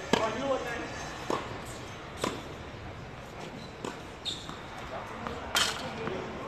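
Tennis ball struck hard by a racket on a serve, the loudest crack, then a few more sharp racket hits and ball bounces on an outdoor hard court over the next few seconds, with players' voices.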